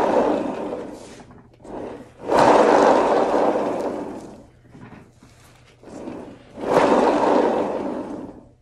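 Hand-spun paint-pouring spinner whirring three times, each spin starting suddenly and dying away within about two seconds. It slows quickly, which the painter puts down to the shower cap underneath restricting it.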